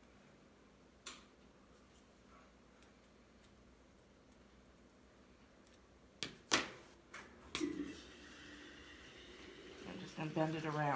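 A few sharp clicks and clacks of a metal ornament piece and tools handled on a craft table while the piece is bent back by hand: one click about a second in, then a cluster of four louder ones about six to seven and a half seconds in.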